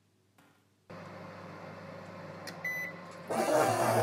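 A steady electrical hum switches on about a second in, a short electronic beep sounds near the three-second mark, and then several voices start talking over one another, as on a group video call.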